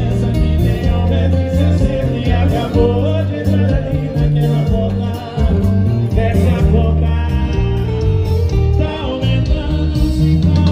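A live sertanejo band plays through a concert sound system: a duo sings over heavy bass and guitar.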